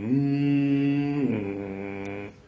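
A man's low voice humming or singing a slow tune in long held notes, the pitch stepping up at the start and back down about a second and a quarter in.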